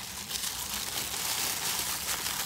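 Tissue paper rustling and crinkling continuously as hands unfold it to unwrap a small gift.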